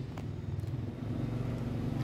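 A motor vehicle's engine running steadily, a low even hum.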